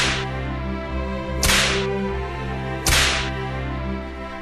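Whip-crack sound effect standing for a belt spanking: three sharp strikes about a second and a half apart, over steady background music.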